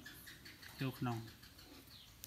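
A man's voice saying one brief word, with faint bird chirps in the background.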